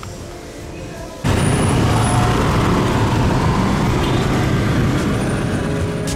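Riding on the back of a motorbike through city traffic: steady engine, road and wind noise on the microphone. It comes in suddenly and loud about a second in.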